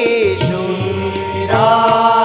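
A male voice singing a devotional chanted verse with tabla accompaniment. The sung line breaks off just after the start over a low held note and comes back about one and a half seconds in.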